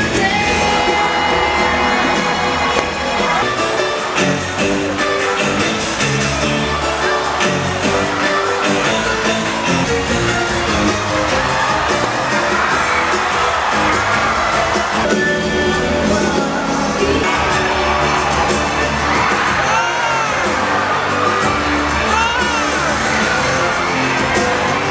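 Music with a steady beat, changing character about fifteen seconds in.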